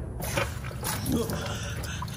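Shurflo water pump switched on, starting up about a quarter second in and running with a steady rough noise over a low hum.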